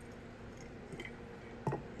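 Faint water sounds from a large glass pickle jar held in a shallow stream as it fills and is lifted out, with a small click about a second in and a brief knock near the end.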